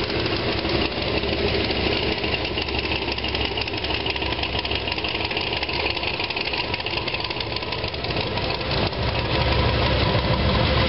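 Classic car and hot rod engines running at low speed as the cars roll slowly past in a line. The engine sound gets louder about nine seconds in as a blue Willys coupe hot rod draws close.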